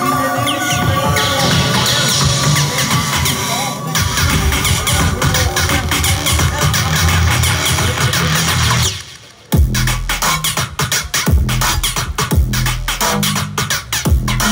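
Loud live electronic bass music from a festival sound system: a dense build-up with gliding synth sounds that cuts out for about half a second about two-thirds of the way through, then drops into heavy bass and a pounding beat.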